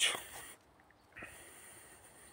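A man breathing between sentences: a short breath of air right at the start, then a fainter breath from about a second in.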